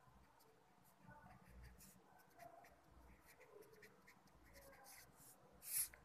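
Faint scratching and tapping of handwriting strokes, with one louder scratchy stroke near the end.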